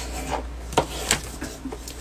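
Scissors rubbed along a fold in a sheet of A4 paper on a wooden desk to crease it, a soft scraping with a few light ticks.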